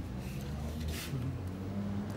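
Steady low hum of an engine running, with a brief sharp click about a second in.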